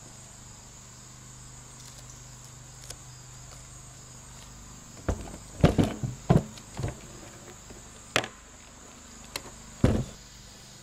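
Knocks and thumps of a battery pack and its cardboard cover being handled and set down on a plastic barrel lid: a cluster of them about five to seven seconds in, the loudest, then single knocks near the end. Under them runs a steady high chirring of insects.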